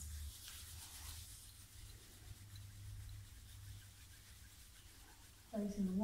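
Faint dry rubbing of palms together during the first second or so, over a low steady hum in a quiet hall.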